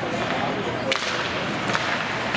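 Ice hockey play: a sharp crack of a hockey stick hitting the puck about a second in, followed by a lighter click, over the steady hiss of the rink.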